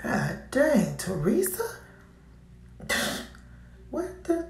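A person's wordless vocal sounds: two pitched, gliding hums or exclamations in the first second and a half, then a short throat-clearing sound about three seconds in.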